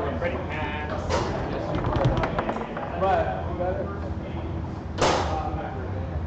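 Foosball ball and rods knocking during fast play on a foosball table: a few sharp clacks, a quick cluster around two seconds in, and the loudest single crack about five seconds in.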